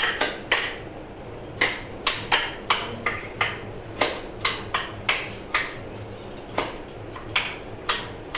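Beads of a large wall-mounted wooden-frame abacus clicking sharply as they are flicked along the rods and knock against each other and the frame, in an uneven run of about two to three clicks a second.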